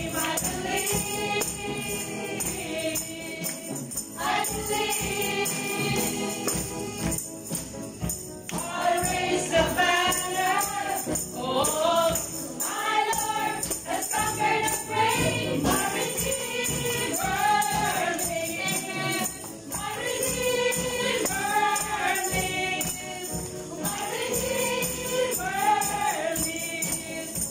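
A woman singing a Christian worship song over backing music, with hand tambourines jingling along.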